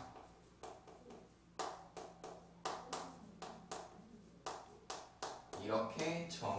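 Chalk writing on a chalkboard: an irregular run of short, sharp taps and scrapes, several a second, as the strokes of handwriting are put down.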